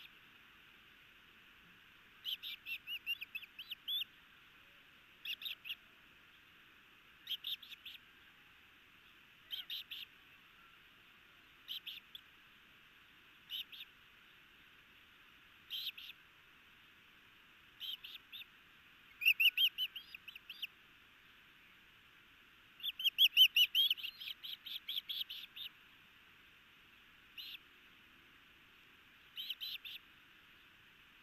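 Osprey chick giving high, whistled food-begging chirps in short runs about every two seconds while an adult feeds it fish. Two longer, louder runs of chirps come partway through.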